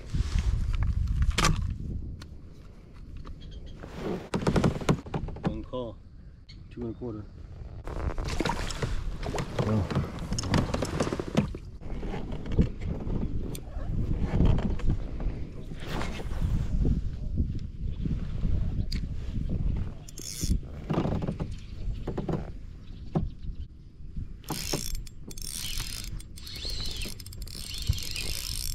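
Wind rumble and handling knocks on a kayak, then the fast clicking of a spinning reel being worked near the end.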